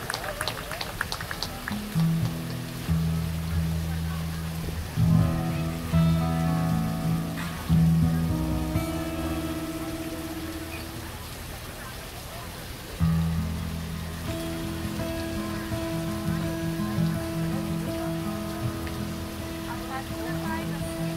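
A band with acoustic guitars playing live, starting a song with low sustained notes about two seconds in, quieter in the middle and louder again about thirteen seconds in. Over it, the steady splashing patter of a fountain's falling water close by.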